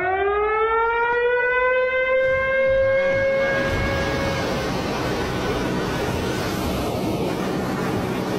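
A siren rising in pitch and then holding a steady tone before fading out about halfway through. Under it runs the continuous rush of water pouring through the open spillway gates of a concrete dam.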